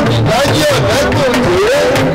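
A man's amplified voice chanting or half-singing into a microphone in gliding phrases, over a live band with steady drum strokes.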